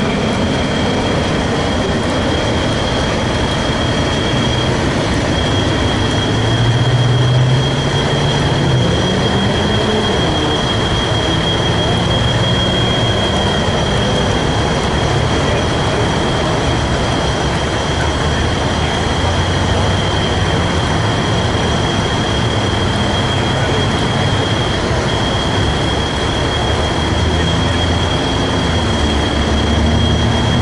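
Heavy wrecker's diesel engine running under load while its winch lines pull an overturned garbage truck upright, with a steady high-pitched whine over the engine. The engine note rises briefly about seven to ten seconds in.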